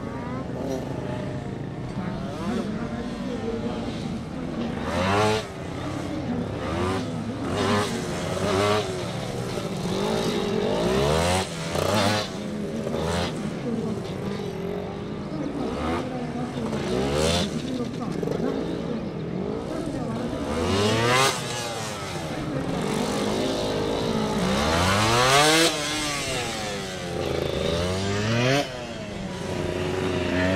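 Motorcycle engine revving up and down again and again, its pitch rising and falling every second or two as the bike accelerates and brakes through a tight cone course.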